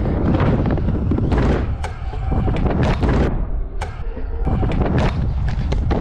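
Stunt scooter wheels rolling fast down a wooden ramp, under a heavy rumble of wind on the camera microphone, with a few knocks. About three seconds in, the rolling noise thins out for about a second, then comes back with a knock.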